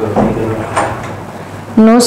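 A woman's speech in short fragments, with a clear spoken word near the end.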